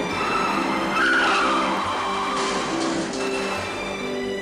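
Car tyres squealing as a sedan skids hard around a corner, a loud squeal that starts about a second in and falls away over the next second or so. It plays over an action film score with a pulse of repeated notes.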